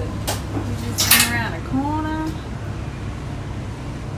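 Steady low rumble inside a moving cable car gondola, with a click just after the start. A voice gives a short exclamation about a second in, then a brief pitched call.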